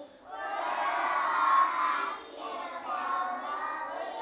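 A group of preschool children singing a song together in unison, loud and somewhat shouted, in phrases with a short break a little past the middle.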